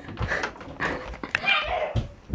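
A dog whining briefly near the end, over scattered light clicks and knocks.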